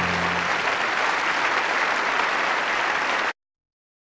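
Audience applause from a live recording, with the last low note of the music dying away under it in the first half second. The applause cuts off abruptly about three seconds in, leaving dead silence.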